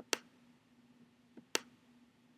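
Computer mouse clicking: two sharp clicks about a second and a half apart, with a fainter click just before the second, over a faint steady hum.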